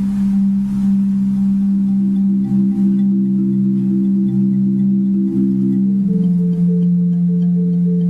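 Soft, sustained pitched percussion playing: a low chord of steady held tones that moves to a new chord about six seconds in, with a faint tremble in the tone, demonstrating a gentle, quiet dynamic.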